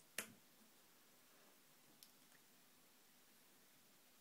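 A single sharp click of a Line 6 Spider IV 15 guitar amp's power switch being flipped on, followed by near silence with one faint tick about two seconds later.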